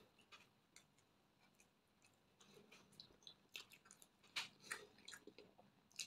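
Close-miked chewing of bread and fried egg: faint mouth clicks, sparse at first and busier in the second half.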